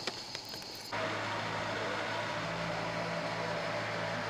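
A steady mechanical hum with a noisy hiss over it, starting abruptly about a second in.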